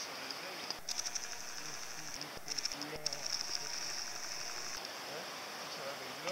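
Outdoor ambience on a woodland path: footsteps on the earth track and faint voices. A high, rapidly pulsing trill comes in bursts, the longest running from about two and a half seconds to nearly five seconds in.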